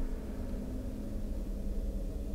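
A steady low hum over faint hiss, with no distinct event standing out.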